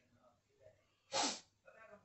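A single short, sudden sneeze about a second in.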